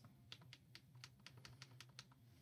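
Faint, light clicking at a computer, about a dozen quick clicks at an uneven pace, like keys or a mouse being worked.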